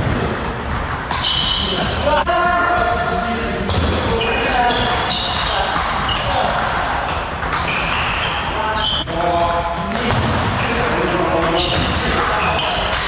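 Table tennis rally: the ball clicking back and forth off rackets and table, under background music.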